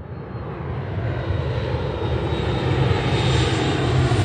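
Jet airliner's engines rumbling with a rushing hiss, growing steadily louder as it draws near.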